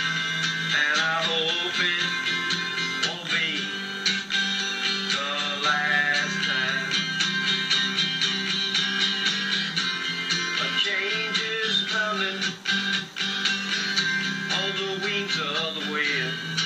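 Acoustic guitar strummed in a country-style song, with a melody line that rises and falls in short phrases over a steady low tone.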